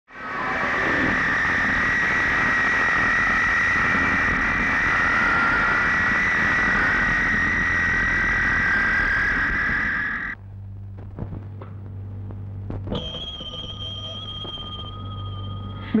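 Jet airliner engines running loud, a steady roar with a high whine, which cuts off abruptly about ten seconds in. A quieter stretch follows with a low hum, a few clicks and, near the end, a steady high-pitched tone.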